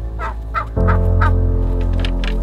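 Poultry calling four times in quick succession over background music, with a deep bass note coming in partway through.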